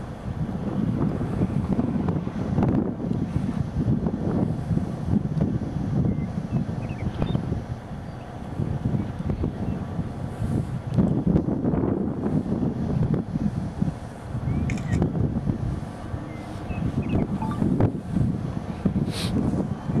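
Gusty wind buffeting the microphone outdoors: a low rumbling noise that swells and eases every few seconds.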